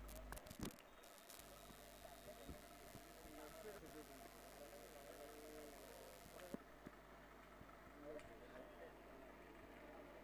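Near silence: faint background with faint, distant voices.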